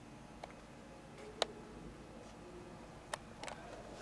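Quiet room tone with a few short, sharp clicks, the loudest about a second and a half in.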